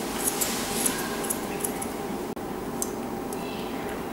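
Grooming scissors snipping hair at the edge of a West Highland terrier's ear: a scatter of faint, quick snips over a steady background hiss.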